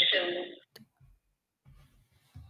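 A woman's spoken question ends about half a second in, followed by a single sharp click, then near silence with only faint low sounds.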